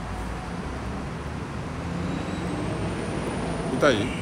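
Road traffic: a passing motor vehicle's low engine and tyre rumble that swells a little through the middle, with a faint thin whine high above it.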